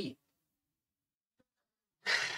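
The tail of a man's word, then near silence with one faint click about halfway through.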